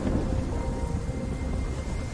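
A steady low rumble, like distant thunder, with faint sustained music tones held above it.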